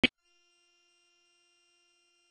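A brief click right at the start, then near silence with only a very faint steady electronic tone: a gap at an edit point in the sermon recording.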